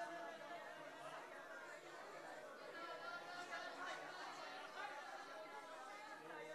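Many voices talking at once and overlapping, a low murmur of a congregation with no single voice standing out.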